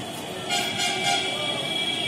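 Horn of an approaching suburban electric local train, starting about half a second in and held as one long steady tone.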